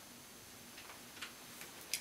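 Quiet room tone with three or four faint, light clicks in the second half, irregularly spaced, the last just before speech resumes.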